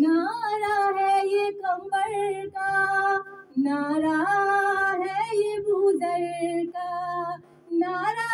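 A woman singing a Shia devotional lament (noha) solo into a handheld microphone, holding long notes in phrases with short breaks for breath, one about midway and one near the end.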